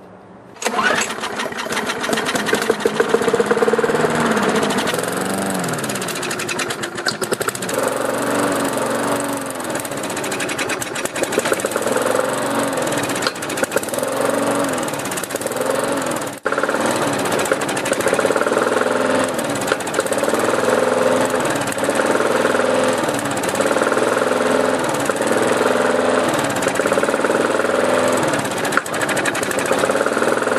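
MTD Pro 158 cc push mower engine running, its speed rising and falling over and over, as it burns off the leftover oil in the cylinder after being hydro-locked.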